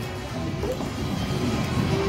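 A 40 Treasures video slot machine playing its bonus-feature music and sound effects, with short chimes and clattering hits.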